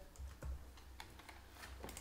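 A few faint, light taps and knocks from a hardcover picture book being handled.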